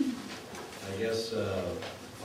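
Indistinct, low-pitched speech in a hall, with no words that can be made out.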